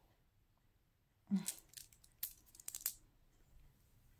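Handling noise from a silver-tone stretch bracelet with clear stones as it is picked up and slipped onto a wrist: a brief soft rustle, then a scattered run of small sharp clicks and clinks of metal and stones lasting about two seconds. This comes after about a second of near silence.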